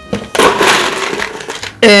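Ice cubes clattering for about a second and a half as a scoop of ice is dug out of an ice bucket and tipped into a blender cup.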